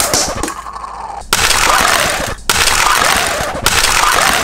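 Die-cast toy cars being fired one after another out of a plastic spring-loaded launcher hauler, making a rapid clatter. The clatter comes in bursts about a second long that stop sharply, with brief breaks between them.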